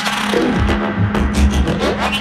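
Generative modular synthesizer patch playing electronic music: quick pitch sweeps and sharp clicks over a steady low drone, with low bass swells in the middle and a long rising sweep near the end.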